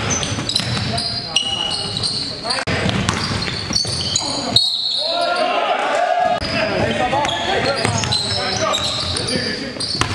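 A basketball bouncing on a hardwood gym floor, in a large, echoing hall, with players' voices over it.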